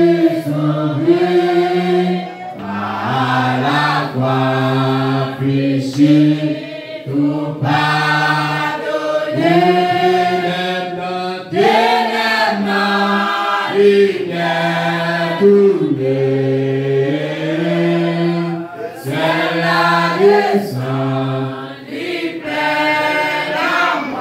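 Church congregation singing a hymn together, slow and in long held notes, with a man's voice leading through a microphone.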